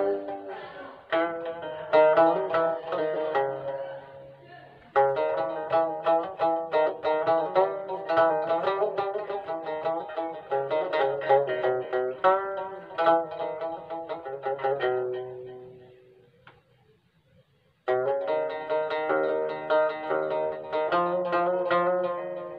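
Moroccan watra (wtar), a long-necked plucked lute, played solo in an improvised taqasim: quick runs of plucked notes. The playing dies away about fifteen seconds in and pauses for about two seconds before it starts again.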